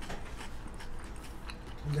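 A man chewing a mouthful of sweet potato quesadilla in a flour tortilla, with a few faint soft clicks of chewing.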